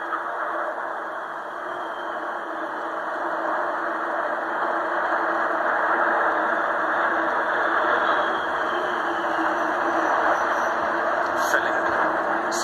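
Noise of a formation of military jets flying overhead, heard through a television speaker, swelling about halfway in with a faint falling whine as they pass.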